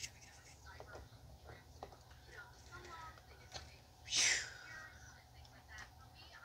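Faint clicks and rustles of small plastic toys and a toy shopping cart being handled, with one short breathy hiss, like a whisper or a breath, about four seconds in.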